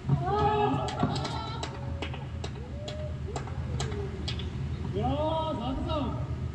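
Wordless voice sounds that rise and fall, about a second long near the start and again near the end, with softer ones in between. They sit over a steady low hum, with scattered sharp clicks.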